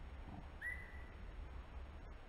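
A single short whistled bird call about half a second in: a quick upward slide into a steady high note lasting about half a second. Under it runs a faint, steady low rumble.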